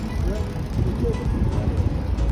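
Street noise from a busy pavement, with wind rumbling on the phone's microphone and faint voices of passers-by in the background.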